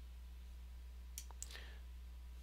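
Two faint computer mouse clicks about a quarter second apart, the button pressed and released while dragging a crop box, over a steady low electrical hum.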